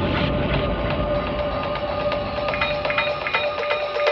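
Opening of an electronic music track: a steady held tone under quick, evenly spaced clicks, with short high notes coming in about halfway through.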